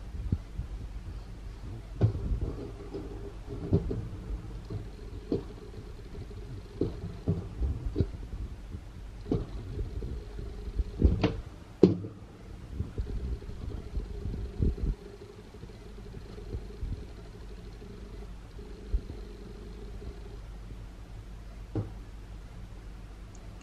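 Kitchen handling noises around a nonstick frying pan of sausage slices and onion on the stove: irregular knocks and clatters over a low rumble, with the loudest pair of knocks just past the middle.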